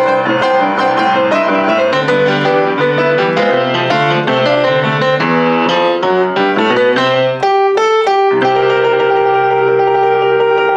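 Offenbach PG-1 baby grand piano played in a rock and roll style: quickly repeated chords over a steady bass pattern. About seven and a half seconds in the bass drops out for a few repeated high chords, then a chord is held over the returning bass.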